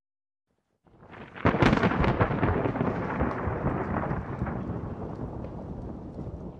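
A rolling crash sound effect: it swells in about a second in, peaks sharply, then fades slowly over several seconds with some crackle in it.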